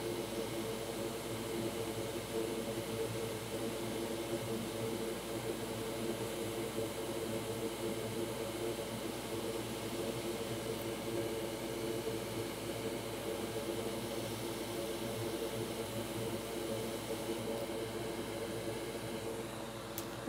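Hot air rework station blowing a steady whir at low airflow while it heats a capacitor to reflow its solder.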